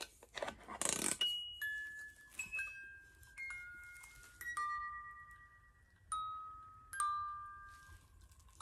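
Wind-up music box in a blue powder holder playing a slow tune: single clear metal notes plucked one after another, each ringing out and fading. A brief rustle of handling comes just before the tune starts.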